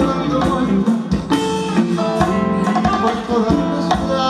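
Live band music led by plucked guitar, with drum hits keeping the beat.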